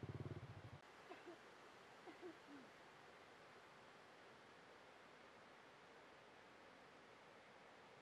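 Near silence: a faint hiss, with a brief low buzz in the first second and a few faint short calls soon after.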